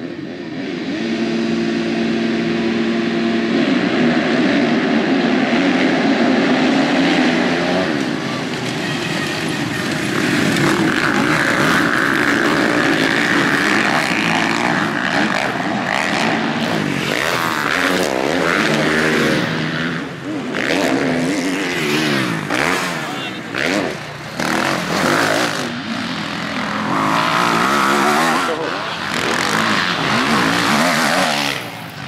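A field of motocross dirt bikes held at steady revs at the start gate, then launching together with engine pitch rising. Later single bikes rev up and down repeatedly as they go over jumps and through corners.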